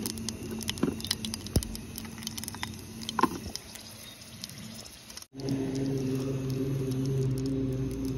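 Cumin seeds and a dried red chilli crackling in hot oil in a pot on a butane camping stove: scattered small pops and clicks. After a sudden cut about five seconds in, a steady low hum with a few held pitches takes over.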